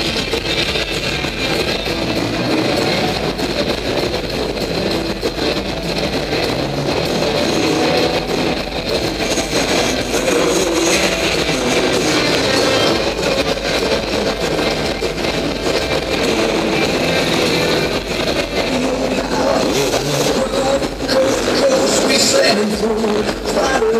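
Dirt bike engines running and revving as enduro riders work over the obstacles, with music playing over a PA, echoing in a large hall.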